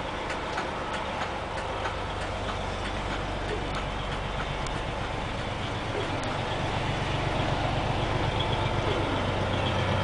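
Detroit Diesel Series 60 engine of an MCI 102-DL3 coach idling, heard from inside the passenger cabin as a steady low hum that grows slightly louder toward the end.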